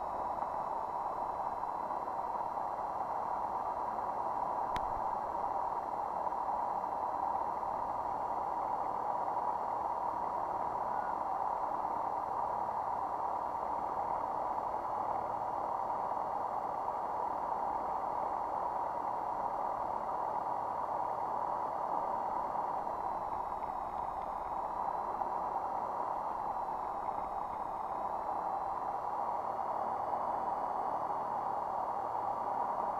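Light aircraft's piston engine and propeller running steadily at idle on the ground, heard from inside the cockpit. The fainter higher hum dips in pitch briefly about three quarters of the way through, then settles back.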